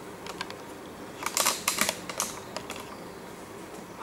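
Scattered light clicks and taps, bunched into a quick run of them about a second in, over a faint steady hum.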